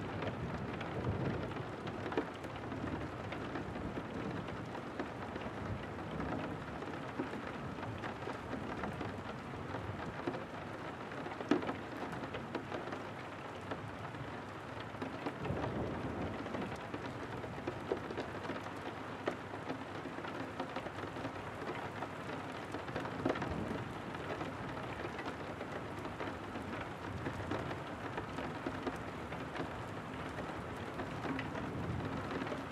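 Heavy rain pattering on window glass, steady throughout, with individual drops ticking sharply here and there. Distant thunder rumbles low beneath it, swelling briefly near the start and again about halfway through.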